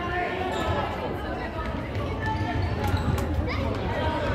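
Futsal ball being kicked and bouncing on a wooden sports-hall floor, with a few sharp knocks about three seconds in, over voices of players and spectators in the large hall.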